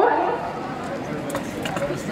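Indistinct talking and murmur from people on an outdoor stage, with no clear words, and a few light clicks in the second half.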